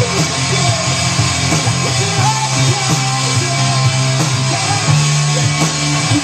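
Live rock band playing loud and without a break: electric guitars, bass guitar and drums.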